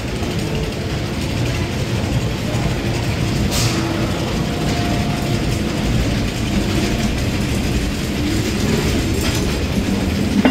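A ghost train dark-ride car running along its track: a steady mechanical rumble and clatter, with a sharper click a little over three seconds in.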